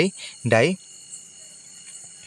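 A man speaks one short word, then pauses; under it a faint, steady high-pitched chirring background runs on without a break.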